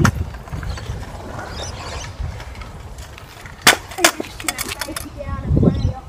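Stunt scooter wheels rolling on rough concrete, a low rumble, with two sharp clacks just before the midpoint of the clip's second half, followed by a run of lighter clicks and another short rumble near the end.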